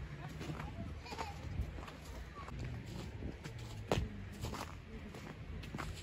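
Footsteps in fresh snow: a few soft, irregular crunches and one sharper knock about four seconds in, over a low wind rumble on the microphone.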